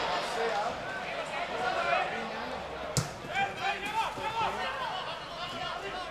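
Scattered shouts and calls from players and spectators at a football match, with one sharp thud about halfway through.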